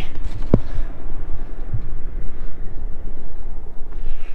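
Wind buffeting the microphone: a steady low rumble with one short click about half a second in.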